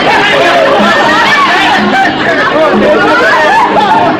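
A party crowd talking and calling out over one another loudly, with dance music underneath.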